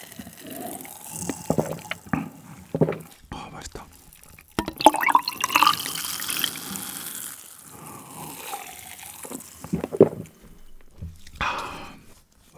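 Cola gulped from a glass jar, then poured from a plastic bottle into the jar about five seconds in, splashing and fizzing, with the pitch of the pour rising as the jar fills. A sharp knock follows near the end.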